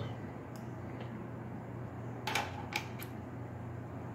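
Light metallic clicks from the small steel parts of a Glock trigger mechanism housing and its spring being turned and fitted by hand: a few scattered ticks, with a short cluster of clicks about two and a half seconds in, over a steady low hum.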